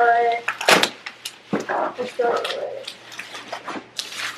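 Plastic bubble wrap crinkling and rustling as it is pulled and handled, with scattered crackles.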